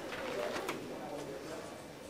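Faint murmur of distant voices in a large room, with a faint click a little under a second in.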